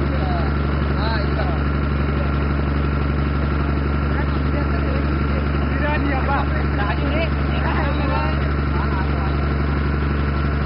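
A boat's engine running steadily, a low, even drone that does not change, with voices chattering underneath.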